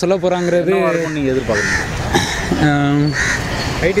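Crows cawing behind a man's speech, a few caws about a second and a half apart.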